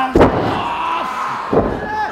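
A wrestler's body slamming down onto the wrestling ring's canvas with a loud thud just after the start, then a second, lighter thud about a second and a half in.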